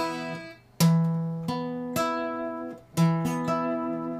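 Acoustic guitar strummed in short rhythmic chord hits, playing an E5 chord. The chords ring between strums, with brief stops just before one second and just before three seconds.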